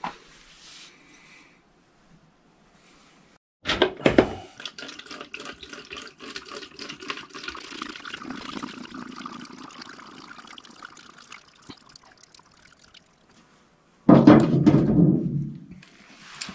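WD-40 poured from a gallon can through a funnel into a plastic spray bottle: a clunk about four seconds in, then liquid trickling and glugging for about nine seconds. A louder burst of handling noise comes near the end.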